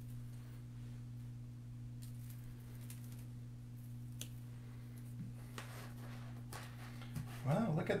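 Faint scattered clicks and rustles of artificial berry stems being handled and pushed into a grapevine wreath, over a steady low electrical hum. A voice starts near the end.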